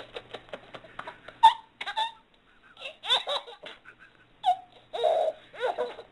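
Baby giggling and laughing in short separate bursts with brief pauses between them.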